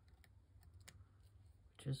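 Faint, scattered small clicks of fingers handling a small paper sticker, peeling and pressing it onto a card.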